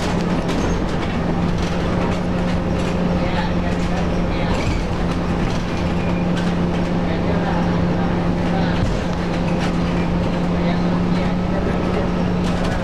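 Inside a city transit bus: the engine runs with a steady, constant low hum over a rumble, with scattered clicks and rattles from the cabin.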